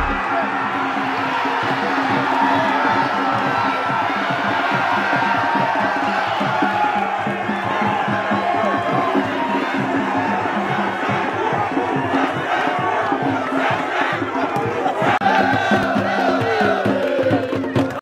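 A large crowd of football supporters cheering and chanting together, many voices at once, steady and loud, with music playing underneath.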